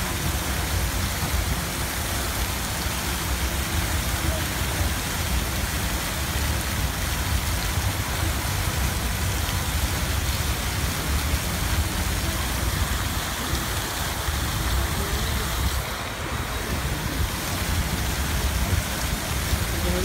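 Many fountain jets spraying and splashing back into the pool: a steady rushing hiss of falling water.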